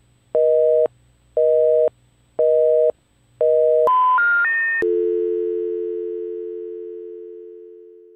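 Telephone line tones: four short busy-signal beeps about one a second, then three rising notes, then a steady dial tone that slowly fades out.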